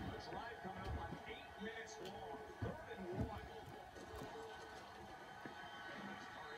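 Faint television sports commentary in the background, with a couple of soft thumps about halfway through.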